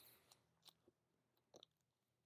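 Near silence, with a few faint, brief clicks of record sleeves being flipped through in a bin.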